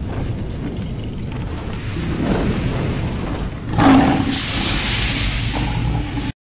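Cinematic sound effect: a low rumble that builds, then a sudden loud boom about four seconds in, followed by a steady hiss.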